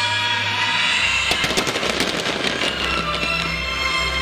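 Fireworks going off over the show's music: a quick run of crackling pops starts about a second in and lasts about a second and a half, with a low rumble underneath.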